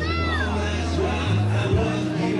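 Dance music playing with a steady bass line; right at the start a short high voice-like note rises and falls.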